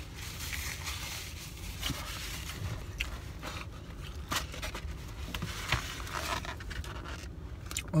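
Eating from a styrofoam takeout container: scattered light scrapes and clicks of a plastic spoon against the foam, with napkin rustling, over a low steady hum.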